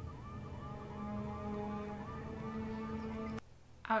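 Episode audio of a steady layered electronic tone with a short rising chirp repeating at a quick, even pulse, like an alarm or siren, cutting off suddenly just before the end.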